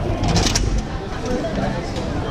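A glass door with a metal lever handle being pushed open, giving a short clack about half a second in, over a low rumble and the murmur of voices.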